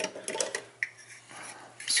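Steel sockets on a metal socket rail clinking against each other and the drawer as the rail is picked up out of a toolbox drawer: a few light clicks in the first half second and one more near the middle, then quiet handling.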